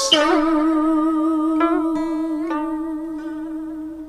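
The closing bars of a Southern Vietnamese đờn ca tài tử piece: plucked strings with one long held note that wavers in pitch. A couple of plucked strokes come about one and a half and two and a half seconds in, and then the music fades out.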